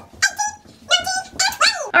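A dog yelping and whining: a few short, high-pitched cries that drop in pitch, then a longer whine that rises and falls near the end.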